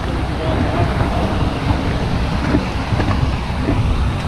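Wind buffeting a body-worn camera microphone, heard as a steady low rumble, with faint talk in the background.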